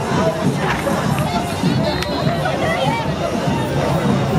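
Carnival street-parade crowd: many voices shouting and talking at once over band music, loud and unbroken.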